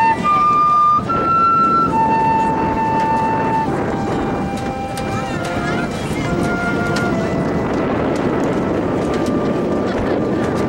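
Marching band wind soloist playing a slow melody of long held notes. Softer sustained notes from other band instruments join about halfway, over steady outdoor crowd and wind noise.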